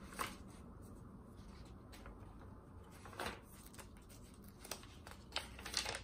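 Stiff, painted and glued paper pages of a thick glue book being turned by hand: several short rustles, the loudest about three seconds in and just before the end.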